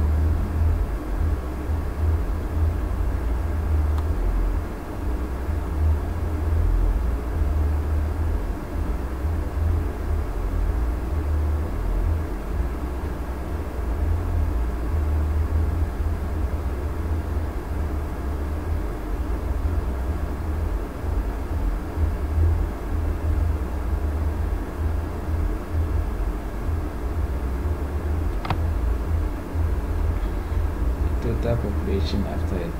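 Steady low rumble of background noise picked up by the microphone, with no speech; a faint click sounds near the end.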